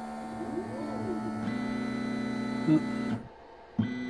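Stepper motors of a 3D printer converted to a pick-and-place machine, whining as the placement head moves. About half a second in, one pitch rises and falls as a move speeds up and slows down. The sound cuts off abruptly for about half a second near the end, then resumes.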